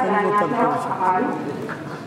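Speech: a voice reading out graduates' names one after another, each called as 'Doctor'.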